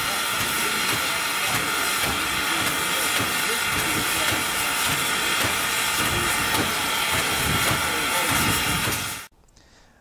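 Standing Norfolk & Western No. 475 steam locomotive venting steam in a steady, loud hiss, with people's voices faint beneath it. It cuts off suddenly near the end.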